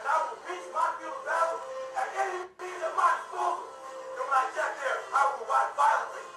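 A man giving a motivational speech over background music, with a brief break about two and a half seconds in.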